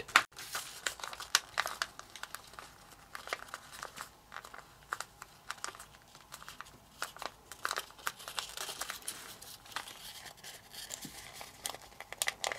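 Origami paper being folded and creased by hand, crinkling and rustling in short irregular crackles as the flap is pressed flat.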